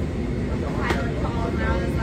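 Steady low drone of an airplane cabin, with a single short click about a second in.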